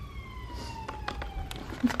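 A distant emergency-vehicle siren: one long falling wail that fades out shortly before the end, with a few small clicks in the second half.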